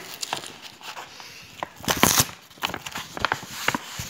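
A large paper mailer envelope being torn open by hand, its paper and packing tape ripping and crinkling in short irregular bursts, the loudest about halfway through.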